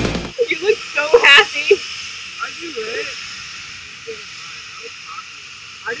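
Music cuts off at the start, then people's voices talking and exclaiming, loudest about a second in, trailing off into quieter talk over a steady hiss, with a voice starting again near the end.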